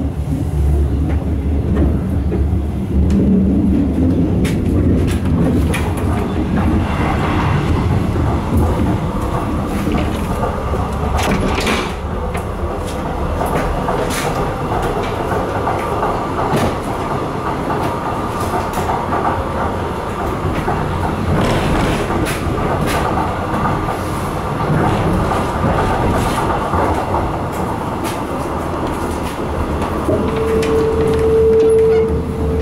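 Cabin noise of a ČD class 814.2 RegioNova diesel railcar under way: steady diesel and running noise with sharp knocks of the wheels over rail joints. A thin steady whine comes in about halfway through.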